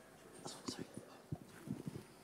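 A man drinking water from a glass: faint sips followed by several short gulps as he swallows.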